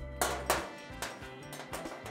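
Background music, with two light clicks in the first half second: a small metal part being set down on a stainless steel counter.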